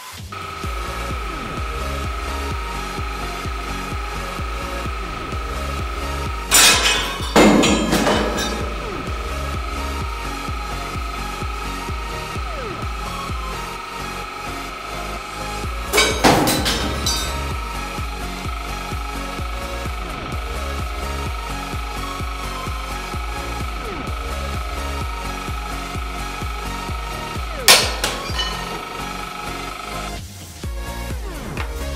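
Electronic dance music with a steady beat, broken by loud sharp cracks as a 100-ton hydraulic press crushes a steel nail puller: a cluster of cracks about six to eight seconds in, another near the middle, and a single one near the end.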